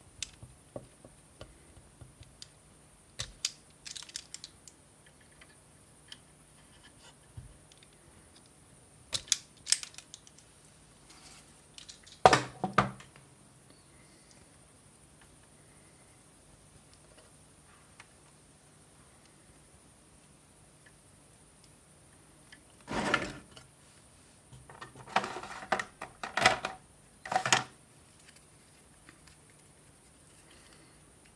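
Scattered clicks, snips and clatter of hand tools and wires being handled on a workbench, a wire stripper among them, loudest about twelve seconds in and in a run of clicks near the end, over a faint steady hum.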